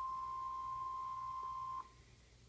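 Emergency Alert System tornado-warning attention tone playing from a tablet: one steady, single-pitch beep that cuts off suddenly near the end.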